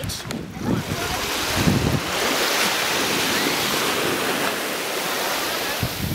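Small waves washing in over a sandy beach, a steady hiss that swells about two seconds in and holds for a few seconds.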